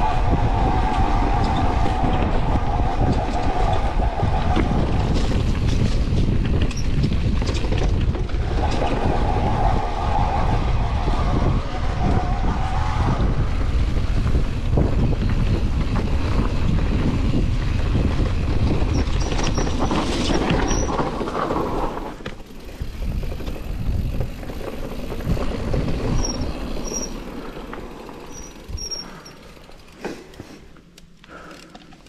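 Wind on the camera microphone and rolling, rattling noise from an e-mountain bike ridden fast down a dirt forest trail, with a whine that comes and goes in the first half. The noise drops to a much lower level about two-thirds of the way through as the bike slows.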